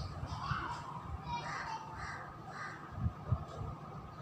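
A bird cawing about four times in quick succession, the calls roughly half a second apart, followed by two short low thumps.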